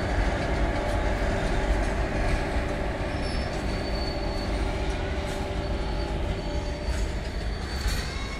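Coal-loaded open freight wagons of a train rolling past, a steady rumble and rattle of wheels on rails, with a faint high squeal a few seconds in.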